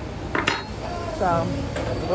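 A metal fork clinks against a ceramic dish about half a second in, then a person's voice comes in from about a second in.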